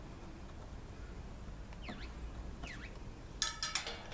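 Screwdriver clinking against a metal screw on an ET gate motor's cover: a quick cluster of sharp metallic clinks near the end. Two faint chirps are heard about halfway through.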